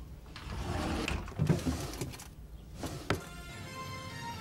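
Rustling and shuffling of clothes and hangers being rummaged through, ending in a sharp click just after three seconds; steady music tones start right after the click.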